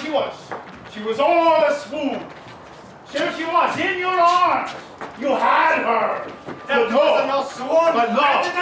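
Men's voices in loud, drawn-out stage vocalising, the pitch sliding up and down in long phrases with short pauses, and a short knock at the very start.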